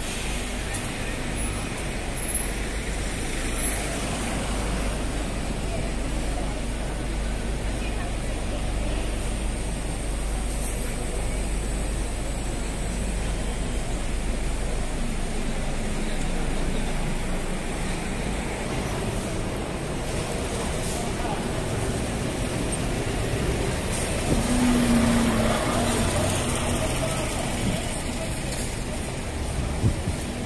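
Busy city street ambience: steady road traffic noise with passers-by talking. Near the end a louder vehicle passes, with a low engine tone.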